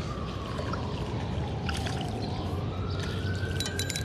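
A distant siren wailing, its pitch slowly sinking and then rising back again. Under it is the splash and trickle of water as a hooked largemouth bass is reeled to the rock and lifted out, with a few faint clicks.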